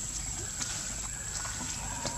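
Outdoor ambience: a steady high-pitched drone over a low rumble, with a few faint light clicks.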